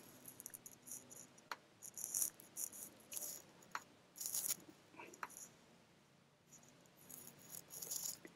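Faint, scattered clicks and a few short rustles: small handling noises picked up by a computer microphone while a screen share is being set up, a handful of them over several seconds.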